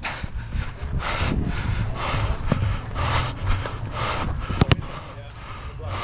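Sounds of play on an artificial-turf pitch heard from a player's body camera: rhythmic noise of running footsteps and breathing over wind rumble on the microphone. A sharp knock of the ball being kicked comes about three-quarters of the way in.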